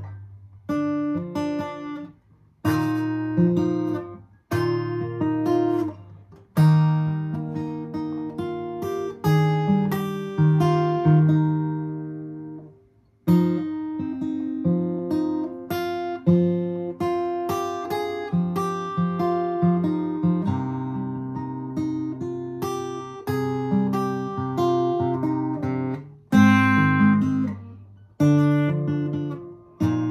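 Capoed acoustic guitar played fingerstyle: single melody notes picked over recurring bass notes, each note ringing and fading, with a few short pauses between phrases.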